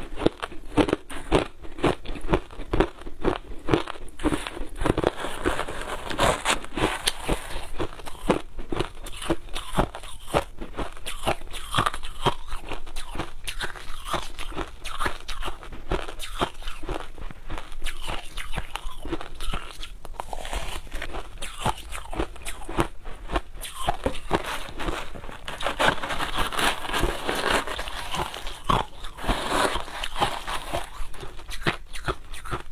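Crushed ice being bitten and chewed, a fast, continuous crunching of ice between the teeth, picked up close by a clip-on microphone.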